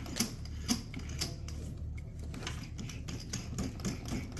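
Half-inch chuck of a DeWalt joist driller being turned by hand to open and close its jaws: a run of uneven light clicks and rattles, coming closer together in the second half.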